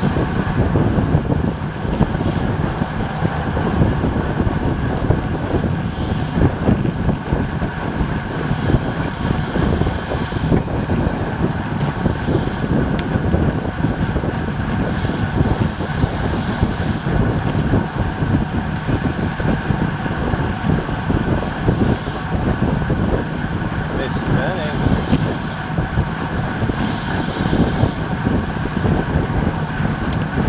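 Steady loud wind rush buffeting a bike-mounted action camera's microphone as a road bike rides at about 24–25 mph.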